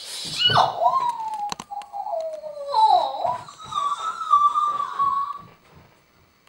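A man picking a padlock with a small metal pick, the pick clicking in the lock, while he whistles one long wavering note. After a short laugh at the start, the note sinks slowly, rises, and is held until it stops shortly before the end.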